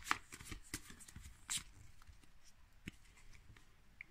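A small stack of Pokémon trading cards being handled and shuffled through in the hands, with a few light card flicks, the sharpest about a second and a half in.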